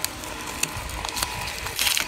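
Green plastic masking film being handled and pulled off a radio chassis: a few light clicks, then a short crinkling rustle near the end, over a faint steady tone.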